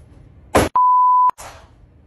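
A sudden loud burst of noise, then a steady high electronic beep lasting about half a second that cuts off abruptly with a click, like a censor bleep laid over the sound.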